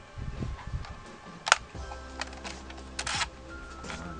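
Sharp plastic clicks and rattles from the phone-holder clamp of a toy drone's remote control being pulled open and handled: one loud click about a second and a half in, then a few lighter ones and a quick cluster near the three-second mark. Background music plays underneath.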